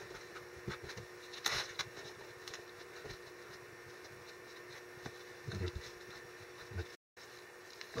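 Faint soft dabbing and scraping of a paintbrush working wet joint-compound-and-latex-paint mud over newspaper, over a steady low room hum. There is one sharper scrape about a second and a half in. The sound cuts out completely for a moment near the end.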